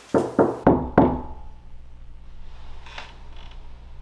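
Four sharp knocks on a door in quick succession, about a third of a second apart, all within the first second.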